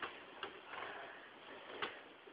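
Faint rustling of bedding as someone moves on a bed, with two short sharp clicks, about half a second in and near the end.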